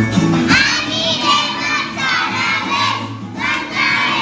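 A group of young children singing a Christmas carol together, loudly, over backing music. Their voices come in about half a second in, in phrases.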